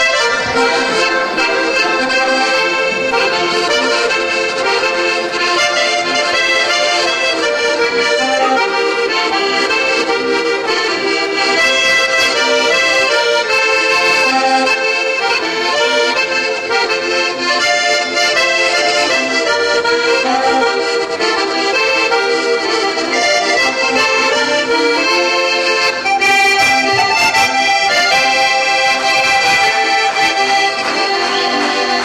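Two piano accordions, one a Paolo Soprani, playing a polka as a duet, with sustained chords and a running melody.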